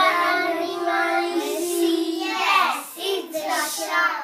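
A small group of young children singing together in unison: one long held note, then a few shorter notes.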